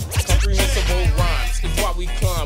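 Miami bass hip hop track: a deep, sustained 808-style bass note comes in about a third of a second in and holds, under chopped vocal sounds and drum hits.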